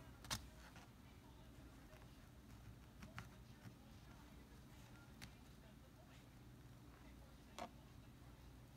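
Small embroidery scissors snipping loose threads: a few faint, sharp clicks a couple of seconds apart over near-silent room tone.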